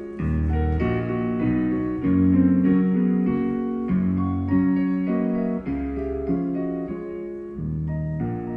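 Solo piano-voiced keyboard playing live: full chords changing about every half second to a second over low bass notes.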